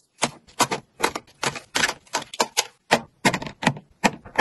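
Small cosmetic bottles and sample packets being set down into plastic drawer-organiser compartments: a quick, irregular series of sharp clicks and taps, about four a second.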